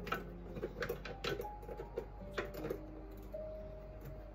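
Light clicks and taps of a Thermomix TM6 butterfly whisk attachment being fitted by hand onto the blade in the stainless steel mixing bowl.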